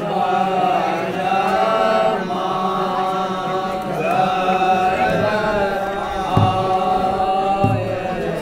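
A group of men singing a Kumaoni Holi folk song together in long, held, chant-like notes. Two low thumps come near the end.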